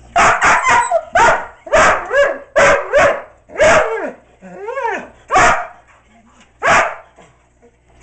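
German Shorthaired Pointer barking repeatedly, about a dozen loud barks, several in quick succession early on, with a wavering, gliding cry about five seconds in.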